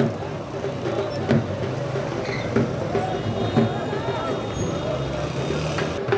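Small commuter motorcycle engines running at low speed, with people's voices over them.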